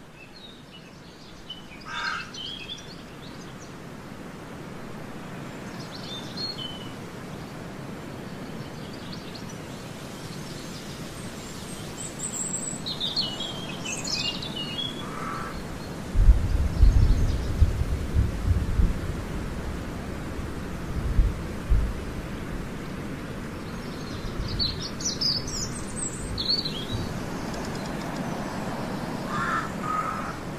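Birds chirping now and then over a steady background hiss that slowly grows louder. Low rumbles come from about halfway through.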